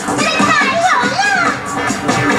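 Parade music playing loudly from a float's loudspeakers, with voices gliding up and down in pitch over a steady backing.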